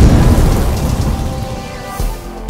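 Sound effect in a title-card intro: a deep rumble under a rain-like hiss, dying away over the two seconds.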